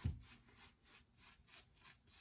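Synthetic shaving brush working soap lather over a stubbled face: faint, quick brushing strokes, several a second.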